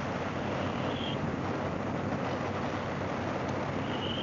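Harley-Davidson Fat Boy's V-twin engine running steadily at cruising speed, mixed with a steady rush of wind and road noise.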